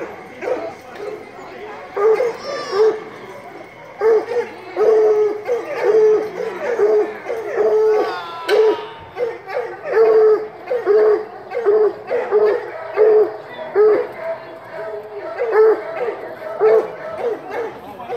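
Dog barking over and over, short pitched barks about one a second, starting a couple of seconds in.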